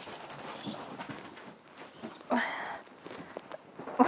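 Dogs shuffling about on a bed: bedding rustling with small clicks and scuffs, and one short breathy burst a little over two seconds in.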